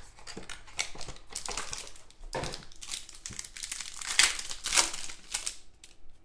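Cardboard and wrapper crinkling and tearing as a Donruss Choice basketball card box is opened by hand. The rustles are irregular, and the loudest come about four to five seconds in.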